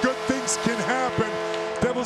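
Arena goal horn holding a steady chord over a cheering crowd, with shouts and whistles that rise and fall in pitch. It is the horn that signals a home-team goal.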